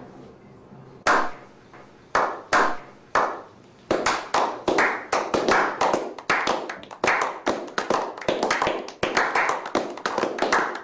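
A slow clap. Single hand claps come about a second apart, each with a short echo. From about four seconds in, more people join and the clapping speeds up into steady applause from a small group.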